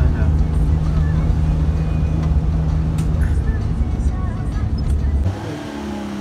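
Car engine and road noise heard from inside the cabin: a steady low hum that cuts off abruptly about five seconds in.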